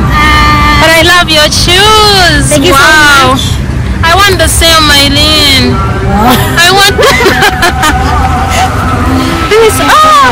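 A song with a singing voice, the melody sweeping up and down in long held notes, played loud and continuous.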